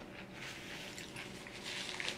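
Faint wet chewing of a mouthful of noodles and pickle, soft squishy mouth sounds with small scattered clicks.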